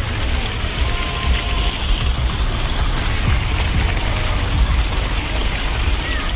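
Steady splashing and trickling of water from a small rock garden fountain, over a constant low rumble.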